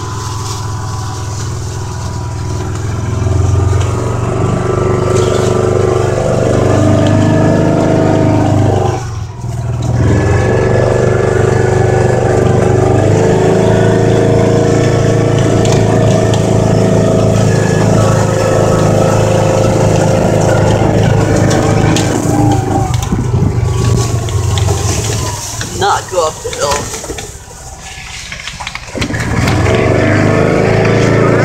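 Engine of a small side-by-side utility vehicle running while it is driven, its pitch shifting with speed. It eases off briefly about nine seconds in and again a few seconds before the end, then picks back up.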